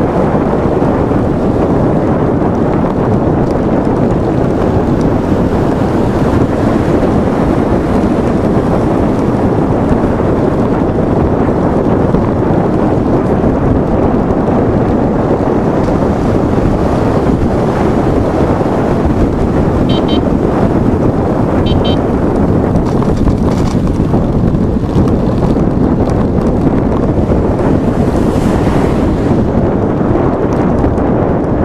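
Wind buffeting the microphone of a bike-mounted camera while riding, a steady heavy rush with no change throughout.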